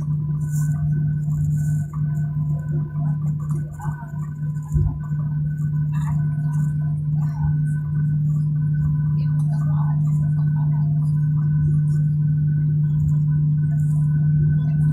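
Airliner's jet engines running steadily as a low hum heard inside the passenger cabin during taxi, growing slightly louder about halfway through, with faint voices in the cabin.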